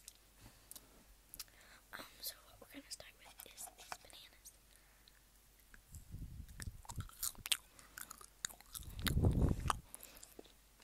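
Close-miked mouth sounds of someone eating candy: scattered wet mouth clicks, then biting and chewing from about six seconds in. Deep muffled thumps around nine seconds in are the loudest part.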